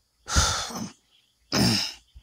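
A man coughing twice: a rough cough about a quarter of a second in and a shorter, voiced one near the end.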